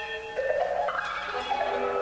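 Symphony orchestra playing held chords, with a sudden louder entry about half a second in.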